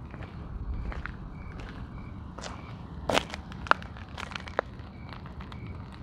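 Quiet footsteps on dirt and gravel with the low rumble of a handheld camera, and a few sharper clicks or crunches around the middle.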